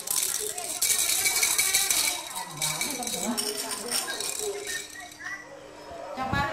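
A toy rattle shaken hard, giving a dense rattling for about the first two seconds, then lighter, scattered shakes.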